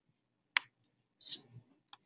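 A single sharp computer mouse click about half a second in, followed a little later by a brief, softer noise.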